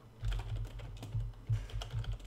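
Typing on a computer keyboard: a quick, irregular run of keystrokes entering a search query.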